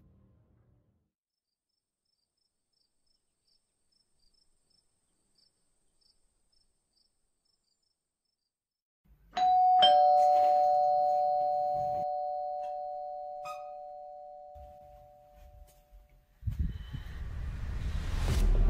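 Near silence, then about nine seconds in a two-tone electronic doorbell rings once, a higher note followed by a lower one, both dying away over several seconds. Near the end a loud, low swell of ominous music sets in.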